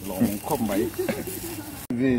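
Speech only: a man talking, cut off abruptly shortly before the end.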